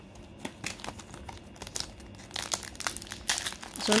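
Foil Pokémon card booster pack crinkling as it is handled and torn open, sharp crackles that grow denser in the second half.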